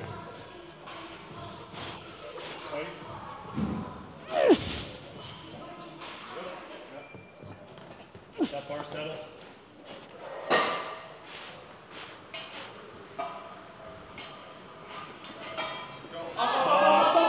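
Short vocal shouts and sharp noises a few seconds apart, about four and a half, eight and a half and ten and a half seconds in, as a powerlifter walks out and braces under a heavy 270 kg barbell for a squat, with a thump. Background music runs underneath.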